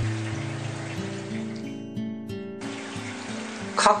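Soft background music of sustained low notes changing every half second or so, over a steady hiss of trickling water that cuts out for about a second midway.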